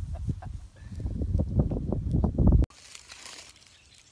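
Outdoor noise, a heavy low rumble with many short rustles and knocks, that cuts off abruptly about two and a half seconds in, leaving a much quieter open-air background.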